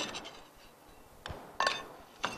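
A metal kitchen utensil clinks once against a serving plate with a short ring, about one and a half seconds in, just after a fainter tap.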